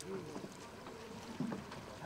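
Distant voices calling across open air over faint outdoor background noise, with a short knock about one and a half seconds in.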